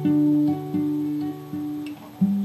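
Acoustic guitar playing a run of picked notes that ring and fade, growing softer toward the end.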